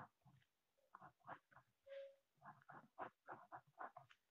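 Faint scratching and tapping of a ballpoint pen writing numbers on paper, in many short irregular strokes, with a brief faint tone about halfway through.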